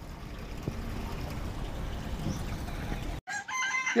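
Chickens clucking faintly over a steady low rumble, cut off abruptly near the end.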